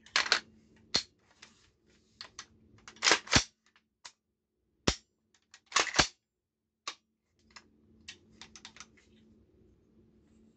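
Sharp metallic clicks and clacks from a Colt SP-1 AR-15 rifle being handled and its parts worked by hand, about a dozen separate clicks, the loudest coming as quick pairs about three and six seconds in, with lighter clicking near the end.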